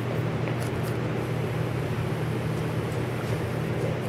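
Steady low mechanical hum with a faint hiss.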